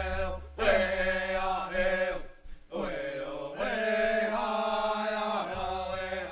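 Background music of chanting voices holding long notes, with a deep low tone under them that drops out for a few seconds in the middle.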